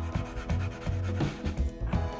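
A soft chalk pastel stick rubbing back and forth across paper in short strokes, laying down a colour swatch. Background music plays throughout.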